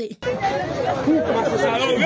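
Several people talking at once, a babble of overlapping voices that cuts in abruptly just after a brief silence at the start.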